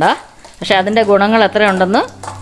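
A voice speaking, after a short pause of about half a second at the start.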